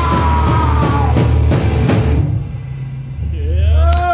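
Live rock band with drum kit and bass guitar playing loud and fast, with drum and cymbal hits over a heavy low bass line. The drumming stops about two seconds in, and a single low bass note swells and rings near the end as the song finishes.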